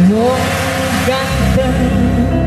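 Live tarling dangdut band music with sustained pitched tones, opening with a pitch slide that rises over about half a second.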